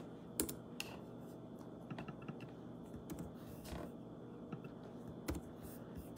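Scattered light clicks and taps close to the microphone, irregular and unevenly spaced, like fingers working a keyboard or device, over a faint steady hum.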